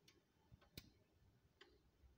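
Near silence with a few faint, irregular clicks, the clearest a little under a second in.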